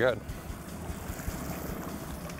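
Steady wind and water noise on a boat trolling across choppy open water, with a faint low motor hum underneath.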